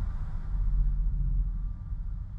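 Deep, steady low drone from a horror trailer's sound design. The faint ring of a struck bell-like tone dies away under it.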